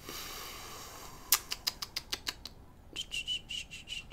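A soft hiss at first, then a quick run of about eight sharp clicks at the computer as drawing tools are picked. Near the end, a high chirping tone pulses several times a second, with a few more clicks.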